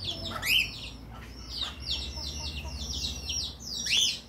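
Birds chirping: a short rising call about half a second in, then a quick run of high, short chirps, several a second, lasting over a second.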